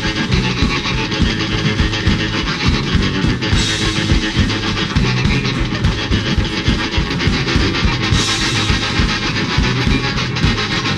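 Punk rock band playing loud and live: distorted electric guitar, bass guitar and a pounding drum kit with cymbal crashes, plus a hand-carried bass drum beaten with sticks.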